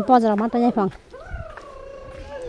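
A woman's voice in the first second, then a long drawn-out animal cry that slowly falls in pitch for well over a second.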